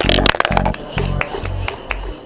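Electronic background music with a steady beat, about two bass hits a second.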